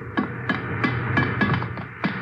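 Radio-drama sound effect of footsteps clanging up a metal ship's ladder, about three ringing steps a second, over a steady low drone.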